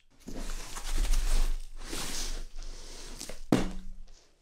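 Black plastic wrapping rustling and crinkling as a heavy wrapped box is handled and lifted, with a dull bump about a second in and a sharp knock near the end.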